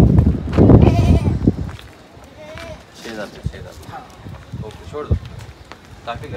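Goat bleating, a wavering call about a second in, over wind buffeting the microphone in the first second and a half; quieter voices follow.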